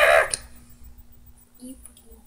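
A girl's drawn-out laugh, which ends about a quarter of a second in. After it come only a few faint clicks and a short murmur.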